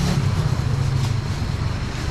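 A steady low mechanical hum, like a motor or engine running, over an even background of market noise.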